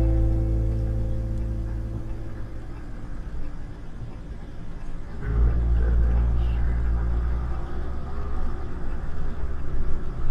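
Soft guitar background music fading out over the first couple of seconds, then a low engine and road rumble from the camper, heard from inside the cab, growing louder about five seconds in as it drives on.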